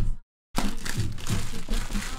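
Trading-card packs and their cardboard box being handled, plastic wrappers crinkling. The sound cuts out completely for a moment about a quarter-second in.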